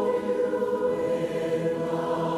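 Mixed choir singing, holding long sustained notes in chord.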